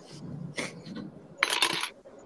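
A clatter of small hard objects knocking together: two brief rattles, then a louder, denser rattle of clicks for about half a second near the end.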